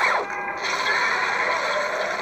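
Animated-film sound effects played from a TV and picked up by a phone: a sharp falling swoosh, then a dense, continuous mechanical scraping rush.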